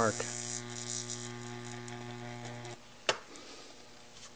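Low-voltage-driven 70 kV X-ray transformer arcing across a paper-clip spark gap: a steady electrical buzz with a hiss over it, a pretty hot arc. The buzz cuts off suddenly a little under three seconds in, and a single sharp click follows about a third of a second later.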